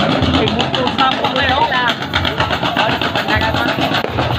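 Indistinct voices of several people calling out and talking over a low, pulsing rumble.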